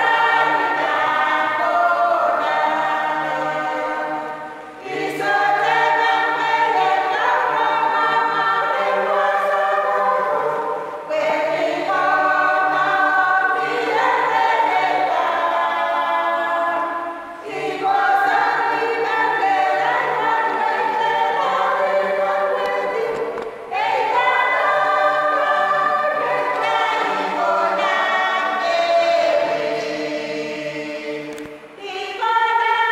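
A small mixed choir of women's and men's voices singing a hymn unaccompanied, in long phrases with a brief breath between them about every six seconds.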